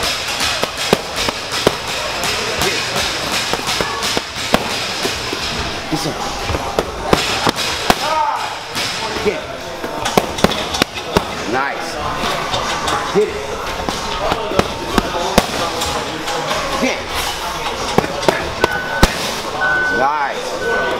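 Boxing gloves smacking into focus mitts: sharp pops in quick runs of two and three, again and again, over background gym music and voices.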